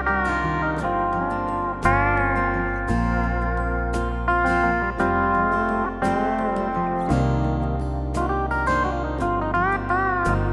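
Yamaha Genos arranger keyboard playing a pedal steel guitar voice, its notes sliding and bending in pitch. Underneath runs the keyboard's auto-accompaniment style: bass, drums and strummed guitar, with a beat about once a second.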